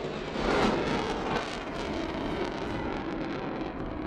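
A steady roar of heavy engine noise, swelling briefly about half a second in.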